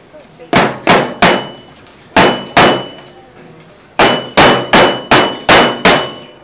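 A metal baking tray used as a mould for melted plastic being struck again and again, sharp clanging knocks each with a short metallic ring. About eleven knocks come in three runs: three, then two, then six in quick succession.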